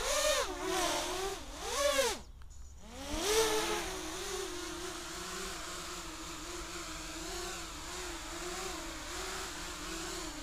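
Small 3D-flight quadcopter's electric motors whining, the pitch swinging rapidly up and down with the throttle. About two seconds in the motors cut out briefly, then spin back up with a rising whine and settle into a steady, lower idle whine.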